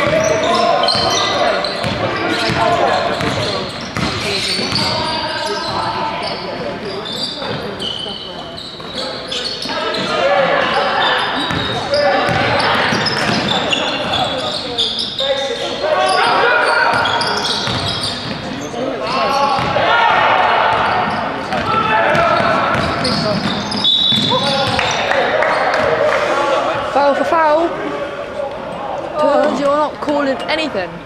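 Live basketball play in an echoing sports hall: the ball bouncing on the wooden court, short high squeaks of shoes on the floor, and players' and coaches' indistinct shouts.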